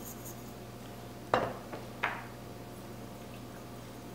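Two short metallic clinks about two-thirds of a second apart, the first the louder, from a utensil knocking against a stainless steel mixing bowl of pasta salad as it is seasoned.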